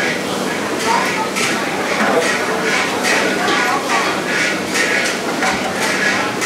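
Background chatter of several voices talking over one another, with frequent short clinks and clatter of ladles and bowls.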